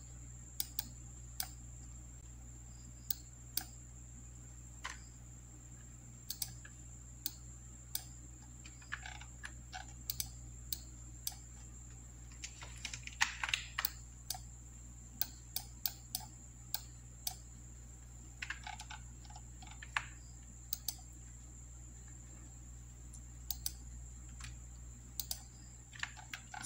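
Irregular clicks of a computer mouse and keyboard: single sharp clicks with a few short bursts of clatter, over a faint steady hum and a thin high whine.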